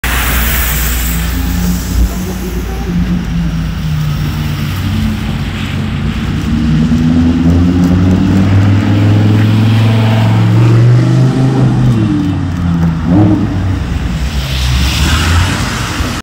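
Lamborghini Huracán EVO's V10 engine accelerating at low speed, its pitch climbing for several seconds, then dropping as it moves off, with a short rev about three-quarters of the way through.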